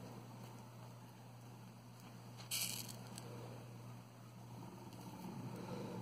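Quiet room with a steady low hum and faint handling noise from hand-sewing pearls onto a rhinestone-mesh flip-flop strap, with one short soft hiss about two and a half seconds in.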